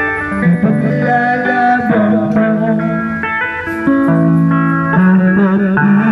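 Electric guitar played through a portable loudspeaker: a melody line of held notes, with a wavering note about five seconds in.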